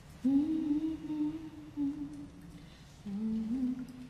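A woman humming a slow wordless tune: one long, nearly level phrase, then a shorter phrase rising step by step near the end.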